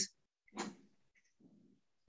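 A man's short breath between read phrases about half a second in, then a faint low murmur; otherwise silence on a gated video-call line.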